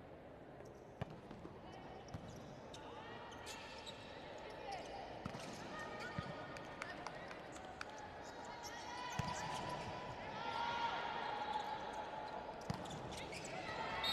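A volleyball rally in an indoor hall: sharp ball contacts scattered through the play and sneakers squeaking on the court. Voices and crowd noise swell over the last few seconds as the point ends.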